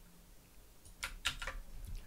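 A few faint computer keyboard keystrokes, four or five quick clicks in the second half.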